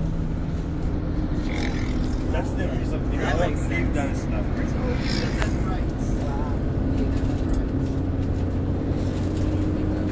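Steady engine drone and road noise heard inside a moving bus, with faint voices of passengers in the background.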